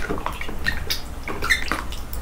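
Close-miked wet chewing sounds: a quick run of sticky mouth clicks and smacks with small squeaks, from a person eating fufu with peanut soup.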